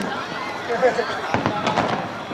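Aerial fireworks shells bursting: a sharp bang at the start and a quick run of sharp bangs about a second and a half in, with people chatting close by.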